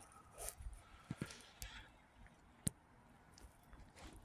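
Very quiet, with a few faint, sharp clicks; the loudest comes about two and a half seconds in.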